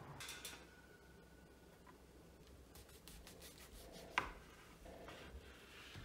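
Faint kitchen handling sounds: soft rubbing and scraping with a few light ticks, and one sharp click with a short ring about four seconds in.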